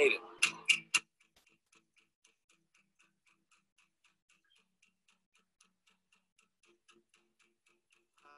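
A man's last words, then faint, steady clock-like ticking, about four ticks a second, over a title sequence.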